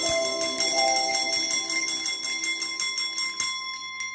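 Colourful press-down desk bells played by children, struck in a quick run of many strokes over several ringing pitches that blend together, the ringing slowly dying down toward the end.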